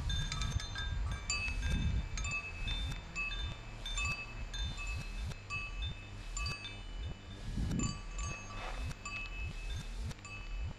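Wind chime made from salvaged hard drive platters and computer parts, struck irregularly by the wind, each hit leaving clear high metallic tones ringing on. Low wind rumble on the microphone lies underneath and swells twice.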